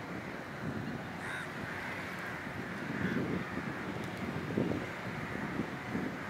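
Wind rumbling in gusts on the microphone over steady outdoor noise, with a few short, faint calls in the first half.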